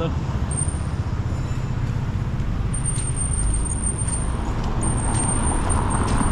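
Street traffic noise, with a car passing close by near the end. A thin, high, steady whine comes and goes, then holds from about three seconds in.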